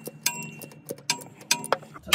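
A few irregular, sharp metallic clicks and clinks, some with a brief ring, from a wrench working the nut on the battery-cable terminal of a starter solenoid.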